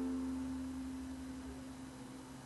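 The final chord of an Enya concert ukulele ringing out, a few held notes fading steadily away.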